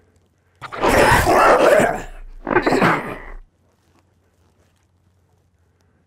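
Two loud creature growls laid in as a sound effect, the first about a second and a half long, the second shorter, with a low rumble under both, as the creature's face morphs back into human form.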